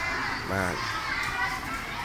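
Children's voices and chatter from a group of schoolchildren, with one child's voice calling out clearly about half a second in.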